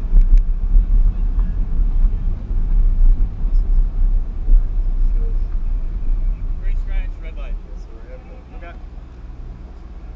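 Car engine and wind rumble heard from inside the car as it rolls slowly and comes to a stop, fading to a quiet steady idle about seven seconds in. Voices are heard briefly as it slows.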